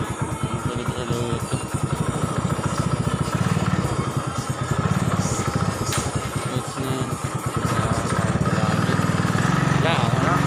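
Small motorcycle engine running while being ridden, a steady pulsing drone that grows louder over the last couple of seconds.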